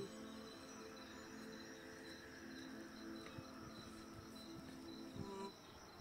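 Quiet, held musical drone tones lingering at the close of the mantra music, with crickets chirping in a steady repeating pattern; the drone stops shortly before the end.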